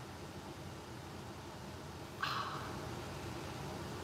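Quiet room noise with a low steady hum, and a short hiss about two seconds in.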